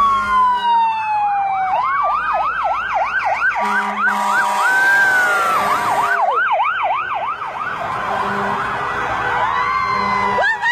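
Several emergency-vehicle sirens sounding together as an ambulance and a fire engine pass. A slow falling wail comes first, then rapid overlapping yelp sweeps, about three a second.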